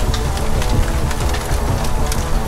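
Logo sting sound design: a dense, steady rumbling noise with scattered crackles and faint held musical tones underneath.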